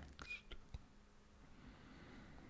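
Near silence: a pause in a quiet voice recording, with a faint steady hum and a few faint clicks in the first second.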